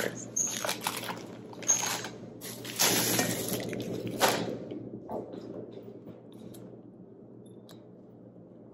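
Plastic shopping bag and candy-bar wrappers rustling and crinkling as full-size candy bars are dumped into a bowl and handled, in several uneven bursts that die down after about five seconds.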